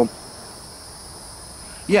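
Insects chirring in the background: a faint, steady, high-pitched drone with no break, heard clearly in a pause between a man's words. He says "yeah" right at the end.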